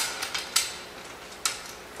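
Sharp metal clinks of bolts, washers and nuts knocking against the steel center hub and tubular braces while they are bolted together. The first clink is the loudest, a few lighter ones follow within the next half second, and one more comes about a second and a half in.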